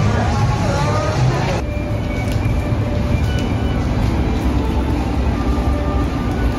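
Outdoor crowd ambience: people's voices over a steady low rumble. About a second and a half in the sound changes abruptly, and faint held tones continue over the rumble.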